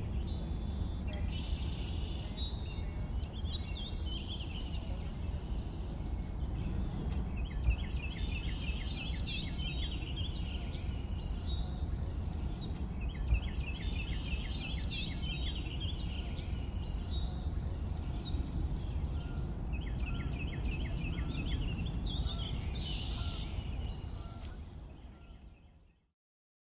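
Forest ambience: a songbird repeating a short trilled song phrase about every six seconds over a steady low background rumble. The sound fades out near the end.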